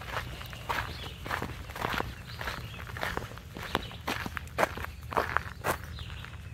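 Footsteps walking briskly on a paved asphalt path, a quick irregular series of light steps, with a steady low rumble underneath.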